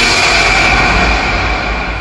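Anime sound effect: a sudden loud rushing noise with a steady high ringing tone running through it, slowly fading away.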